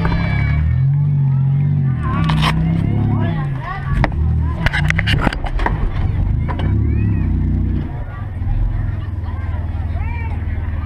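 Demolition derby vehicle's engine heard from inside the cab, revving up and down in a series of swells, then settling to a steadier run about eight seconds in. A few sharp knocks come about four to five seconds in.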